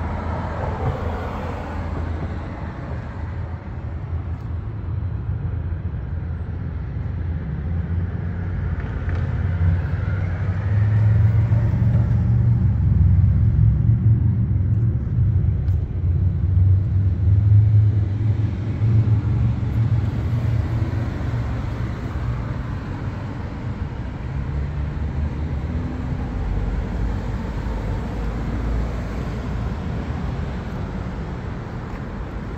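Low rumble of road traffic passing nearby, swelling louder for several seconds in the middle and then easing off.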